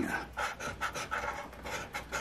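A coin scraping the heavy latex coating off a scratch-off lottery ticket in short, repeated strokes. The coating is thick and hard to scratch, "like scraping paint off a house".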